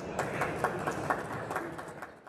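Audience applauding, a dense patter of many overlapping claps that dies away near the end.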